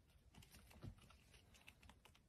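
Near silence with faint, scattered light clicks, from a hamster's claws gripping and scrabbling on a wall as it climbs in a corner.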